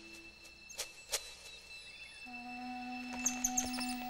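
Quiet background music of long held notes, with a couple of sharp clicks about a second in and a run of short, high-pitched chirps from the forest ambience near the end.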